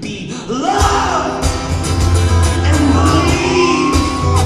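Steel-string acoustic guitar strummed steadily under a wordless vocal line, with a rising note about half a second in and a long held note near the end.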